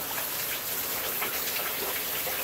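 Steady rush of running water from a shower spraying behind a shower curtain.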